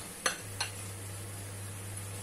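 A metal spoon clinks twice against a ceramic bowl and pan as cooked rice is scooped into a frying pan of sauced vegetables, over a steady low hum.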